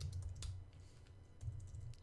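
A few scattered, soft keystrokes on a computer keyboard as code is typed and edited.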